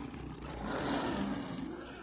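Animated lion roaring: a harsh, noisy roar that swells to a peak about a second in and then fades.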